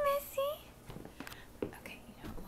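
A toddler's brief, high-pitched two-part babble, followed by soft rustles and light taps.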